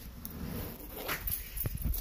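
Quiet movement and handling noise with a few soft knocks, about a second in and near the end.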